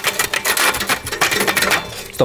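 Rope rasping against a wooden tool handle and its disc as the tool is worked quickly along the taut rope, in rapid repeated scraping strokes, several a second.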